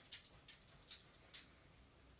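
Faint handling clicks and taps as fingers with long nails work a Kindle e-reader in its case, a few light ticks spread over two seconds.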